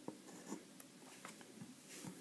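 Faint scratching of a pencil compass on paper as a construction arc is drawn, with a few light ticks and rubs from the compass and hand on the sheet.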